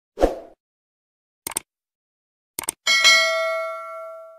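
Subscribe-button animation sound effects: a short soft thump, then two sharp clicks about a second apart, then a notification-bell ding with several ringing tones that slowly fades.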